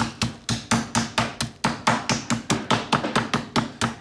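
Metal meat tenderizer mallet pounding chicken thighs through plastic wrap on a wooden cutting board, in rapid, even blows about four to five a second. The thighs are being flattened to an even thickness and tenderized.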